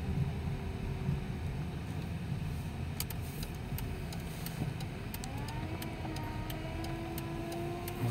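Vehicle engine and road rumble heard from inside the cab while driving slowly. About five and a half seconds in, a faint engine hum rises in pitch as the vehicle speeds up, then holds steady; a few light clicks come in the middle.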